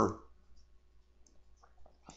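A few faint computer mouse clicks after the tail end of a man's speech.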